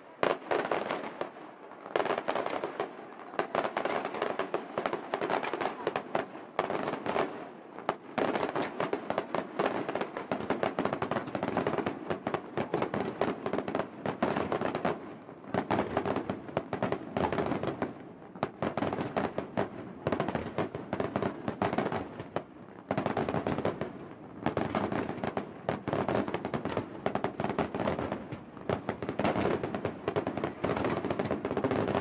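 Fireworks display: aerial shells bursting in a rapid, continuous run of bangs and crackles, with short lulls every few seconds.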